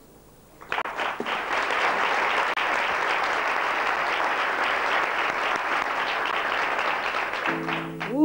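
Audience applauding, starting about a second in after a short pause and running steadily.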